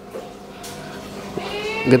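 A person's drawn-out voice, rising gently in pitch and growing louder over the last half second, running into speech.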